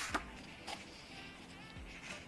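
Faint rustles of sheets of patterned craft paper being leafed through by hand, a couple of brief ones near the start, over faint background music.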